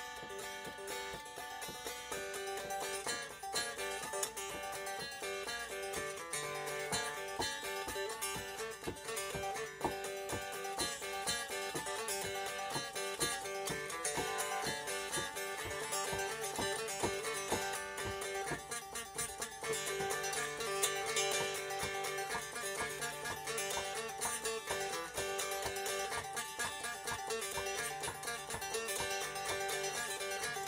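Electric banjo built from a kit, played solo as an instrumental tune: a continuous run of picked notes.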